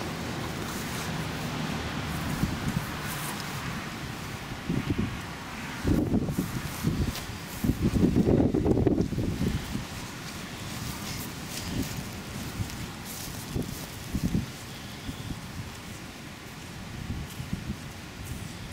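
Wind buffeting the microphone in an open field, a low rumble that swells in gusts about six seconds in and most strongly around eight to nine seconds in.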